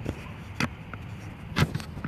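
A few sharp clicks and knocks over a low steady hum, the loudest a quick cluster a little past halfway.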